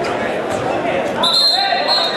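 Spectators shouting and yelling in an echoing gym during a wrestling bout. About a second in, a shrill, steady whistle starts and holds for most of a second.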